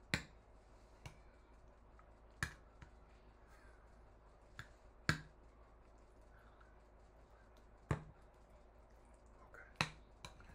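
A metal spoon knocking against a ceramic bowl while stirring marinara sauce and mozzarella: about eight sharp, irregular clinks.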